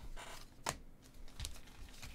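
Stack of glossy football trading cards being flicked through by hand, cards clicking and sliding against one another in a run of short, sharp clicks. The loudest click comes a little over half a second in.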